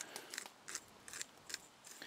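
Hand-held pepper grinder being twisted, a faint series of irregular crunching clicks as it grinds out coarse flakes of pepper.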